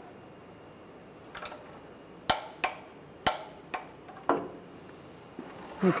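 Torque wrench and socket on the oil drain plug being tightened to 27 foot-pounds: a handful of sharp metallic clicks a second or so apart, two louder ones near the middle.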